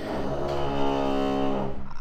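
A man's voice holding one steady vowel, a drawn-out hesitation "ehh", lasting nearly two seconds.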